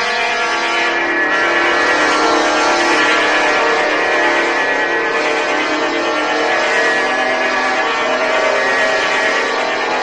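A loud sustained drone of many steady pitched tones layered together, with no deep bass and only slight shifts in the chord: a dramatic sound-effect sting in an audio drama.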